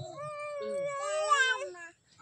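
A single long, high, wavering voice-like call, somewhat like a drawn-out cat's meow. It lasts almost two seconds and is quieter than the speech around it, fading out near the end.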